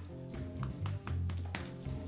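Background music with low sustained bass notes that change every half second or so, over sharp tapping clicks.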